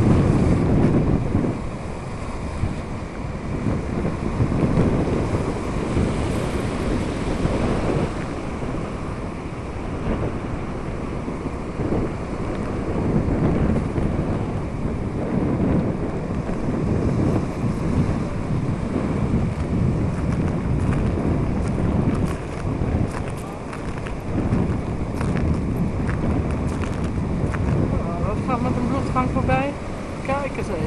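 Strong sea wind buffeting the microphone in uneven gusts, with the surf of the sea beneath it.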